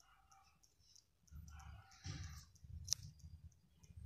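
Faint handling of tarot cards on a cloth, with one sharp click about three seconds in.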